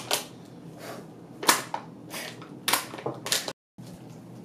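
Thin plastic water bottle crackling as it is squeezed to puff out dry-ice fog: four sharp cracks spread over a few seconds.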